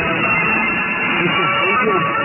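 Guitar-led music from a Radio Romania International shortwave broadcast on 9620 kHz, received in lower sideband. The audio is narrow and cut off above about 3 kHz, with a voice faintly mixed in.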